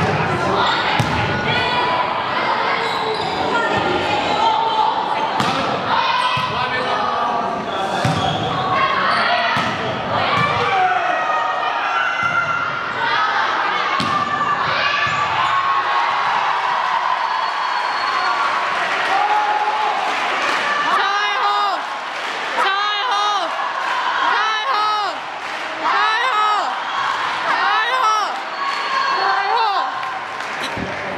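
Volleyball being bounced and struck during play, several sharp ball impacts ringing in a large gym, over players' and spectators' voices. In the latter part, voices repeat a shouted call about every second and a half.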